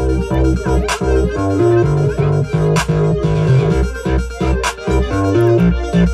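A beat playing through studio speakers: a deep sustained bass under a synth and keyboard melody, with a sharp drum hit about every two seconds.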